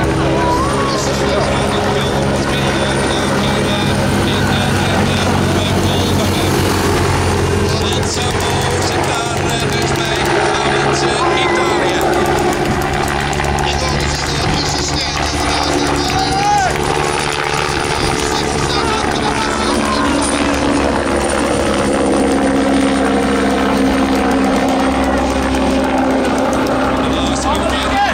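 Steady drone of a helicopter overhead with the engines of race vehicles, holding level throughout, mixed with scattered voices.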